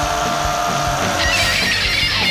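Punk rock song playing, full band with drums and distorted electric guitar, and a singer's laugh at the start. A brighter guitar part comes in just past halfway.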